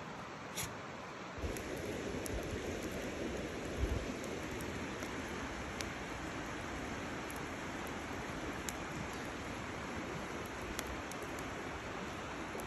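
Wood campfire burning: a steady hiss of flames with scattered sharp pops and crackles every second or so, and one low thump about four seconds in.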